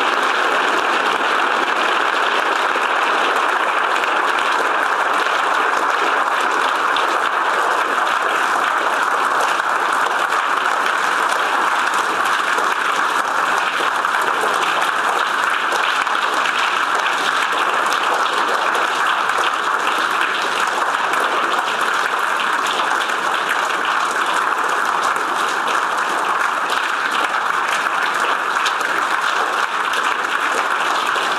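A large audience applauding, a dense, steady, unbroken ovation of many people clapping at once.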